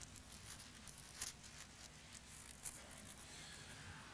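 Faint crackle and rustle of thin Bible pages being turned, with two slightly louder crackles.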